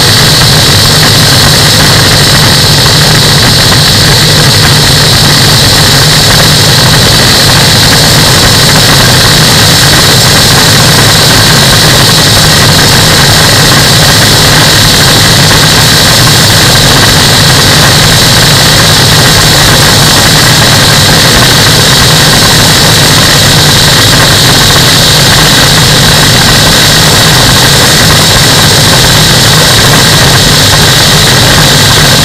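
Mainair Blade flex-wing microlight trike in cruising flight, its engine and pusher propeller running steadily. Rushing airflow on the wing-mounted microphone is mixed in at an even, loud level.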